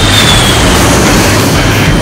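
Jet airtanker passing low overhead during a retardant drop: a loud rushing engine noise with a high whine that falls in pitch early on, under background music.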